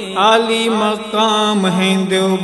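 Man singing an Urdu tarana (devotional anthem), drawing out a gliding, wavering melody over a steady low drone.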